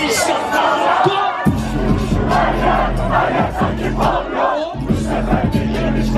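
Concert crowd shouting and cheering over loud live music from the PA. A heavy bass beat comes in about a second and a half in and drops out briefly near the end.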